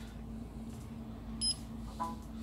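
A short, high electronic ping about one and a half seconds in, signalling the IP-Box 3 being detected on USB, over a faint steady low hum.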